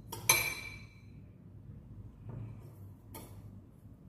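Metal utensil clinks sharply against a glass bowl about a third of a second in and rings briefly. Fainter taps and scrapes of a spoon and fork in breadcrumbs follow twice later on.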